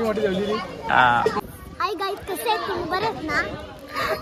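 Children's voices talking and calling out, with a loud high-pitched call about a second in.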